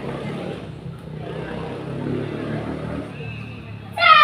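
Indistinct background voices and outdoor ambience with a low rumble. Right at the end a loud, sharp martial-arts shout (kihap) begins as a kick is thrown.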